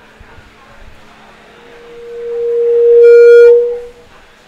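A single high, steady tone that swells louder for about two seconds until it turns harsh and distorted, then cuts off abruptly near the end: a PA system's microphone feedback howl.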